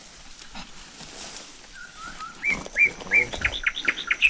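A bird calling in the second half: a run of short, hooked, high notes that repeat and quicken toward the end. Under it is the soft rustle of someone walking through undergrowth.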